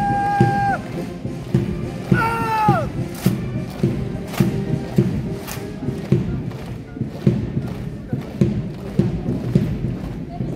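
Foot Guards marching in step, their boots striking the road about twice a second, over military band music. About two seconds in comes a drawn-out shouted word of command that falls in pitch.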